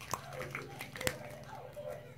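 Homemade slime being stretched and pulled by hand, with two sharp clicks as it pulls apart, one just after the start and one about a second in.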